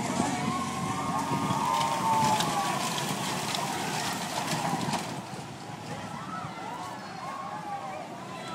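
Riders on a small family roller coaster screaming and whooping as the train runs past, over the rattle of the cars on the track. The noise fades after about five seconds as the train moves on.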